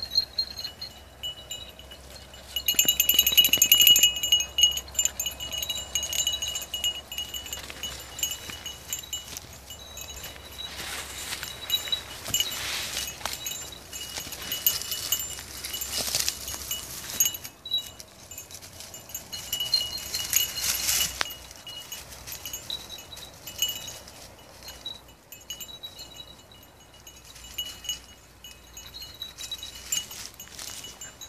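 Small metal bell on a hunting beagle's collar jingling on and off as the dog works through the brush, loudest in bursts a few seconds in and again near two-thirds of the way through, with rustling of scrub in between.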